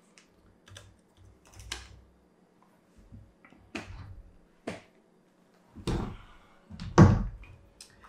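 Scattered clicks and knocks from an Accuracy International AX rifle being handled, lifted and turned around, with two heavier thumps near the end as it is set back down on its bipod and stock on a wooden table.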